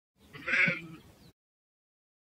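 A goat bleating once, a single short call of about half a second.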